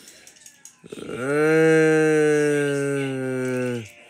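A person's voice holding one long, low, steady note for about three seconds, sliding up into it about a second in and falling away just before the end.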